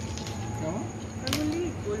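Quiet voices talking, with one sharp click a little over a second in.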